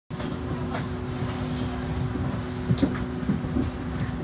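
Bus interior noise heard from inside the passenger saloon: a steady low rumble with a constant droning hum from the bus's drivetrain. A couple of short knocks come about two-thirds of the way through.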